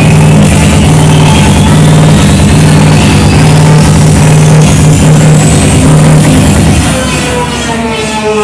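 Psychedelic trance played very loud over a club sound system: a steady rolling bassline with a sweep rising in pitch over it. The bass cuts out about a second before the end, leaving falling synth lines.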